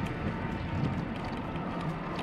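Steady rushing noise of riding a bicycle along a boardwalk: tyres rolling and wind over the microphone.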